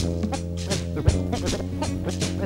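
Soundtrack music: a held chord over a steady bass note, with a drum hit at the start and another about a second in, and quick cymbal ticks on the beat.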